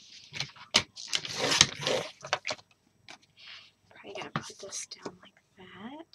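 A sliding paper trimmer cutting scrapbook paper. The blade carriage is pushed along its rail about a second in, with a long hiss of paper being sliced. Clicks from the trimmer and rustling of the cut paper being handled follow.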